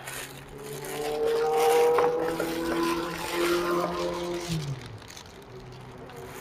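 A motor vehicle engine driving past. Its engine note swells to a peak about two seconds in, then fades, dropping in pitch about halfway through.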